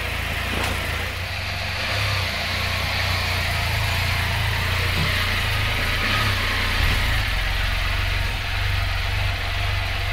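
A 2019 Can-Am Spyder RT Limited's three-cylinder engine running steadily at low revs as the three-wheeler creeps forward into a tight trailer garage, heard from the rider's seat.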